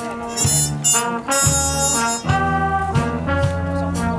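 Big band playing a swing tune live, with the brass section (trombones and trumpets) in short phrases over steady low bass notes.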